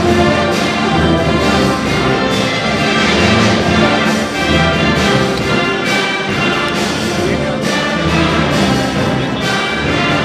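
Brass band music, with several horns holding sustained notes over a steady beat.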